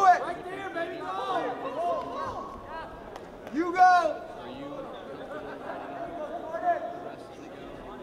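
Several men shouting over crowd chatter in a large hall, with one loud shout about four seconds in.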